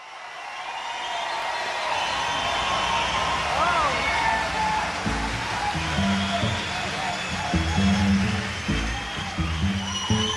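Live concert audience cheering and whooping, fading in. About halfway through, a double bass starts a plucked bass line under the cheering.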